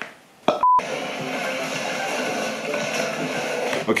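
A brief, single electronic beep about half a second in, followed by background music.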